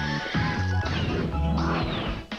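Upbeat cartoon music with a crash sound effect over it.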